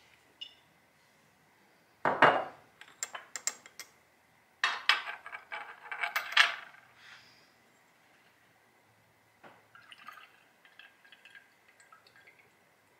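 Glass clinks and knocks as a glass graduated cylinder and amber glass bottles are handled and set down on a ceramic plate, the loudest knock about two seconds in. Near the end, a faint trickle as herbal tincture is poured from the cylinder through a small metal funnel into an amber glass bottle.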